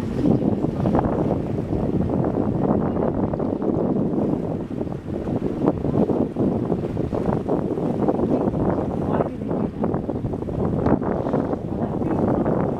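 Wind buffeting the microphone in uneven gusts over the wash of the sea around a moving boat.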